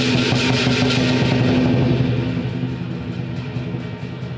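Traditional lion dance percussion of drum, gong and cymbals playing a fast, steady beat, with cymbals and gong ringing. It eases off in loudness after about two seconds.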